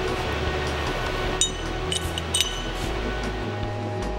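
Background music with three light, ringing metal clinks around the middle: a steel bolt being fitted into a hole in a plasma-cut steel plate.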